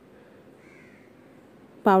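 A crow cawing once, faint and distant, over low background hiss.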